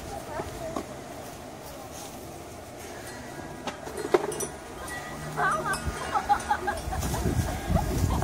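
High-pitched voices without clear words, squealing or chattering, starting about five seconds in after a quieter stretch with a few handling clicks.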